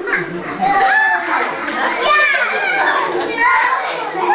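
Several young children calling out and talking at once, their high-pitched voices overlapping.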